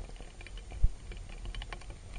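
Underwater clicking and crackling picked up by a submerged camera: irregular sharp ticks over a low rumble, with one low knock a little under a second in.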